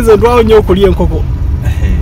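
A man talking for about the first second, over a steady low rumble of road and engine noise inside a moving car.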